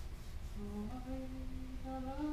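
A single voice humming a slow melody: held notes that step up and down, beginning about half a second in, over a low steady rumble.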